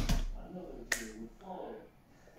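Two sharp hand slaps as a signer's hands strike each other. The first, right at the start, carries a low thump; the second, lighter one comes just before a second in. A faint voice murmurs between them.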